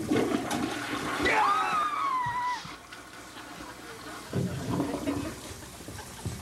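Toilet flushing: water rushes in sharply at the start, with a gurgling pitch that glides up and down about a second in, and dies away after about three seconds. A shorter, lower burst of sound follows about four seconds in.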